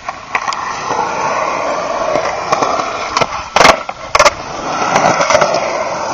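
Skateboard wheels rolling on concrete, a steady rumbling roll that starts just after the beginning. A little past halfway come two loud, sharp clacks of the board striking the concrete, about half a second apart, and then the rolling goes on.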